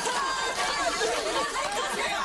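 Sitcom laugh track: many voices laughing and chattering at once, following a punchline.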